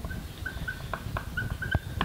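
Marker pen writing on a whiteboard: a quick series of short, high squeaks with light ticks as the tip is pressed and drawn across the board.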